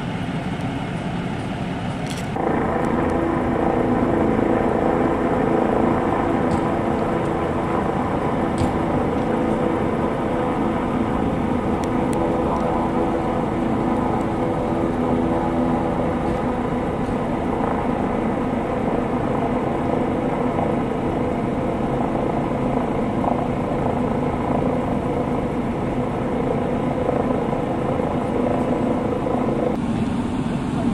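Steady mechanical drone of a running engine, like a large vehicle idling, with several steady tones over a rumble; it steps up in loudness about two seconds in and then holds.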